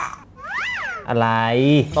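Non-speech vocal exclamations during a game: a short high squeal that rises and falls, like a meow, then a long low drawn-out "oh" that drops in pitch at the end.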